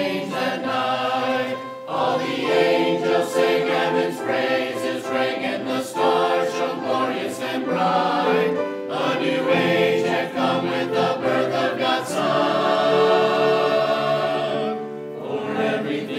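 Mixed church choir of men and women singing together in parts, with a long held chord near the end.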